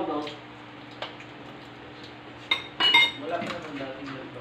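Tableware at a meal: plates and utensils knocking and scraping, with a couple of sharp, ringing clinks about two and a half to three seconds in.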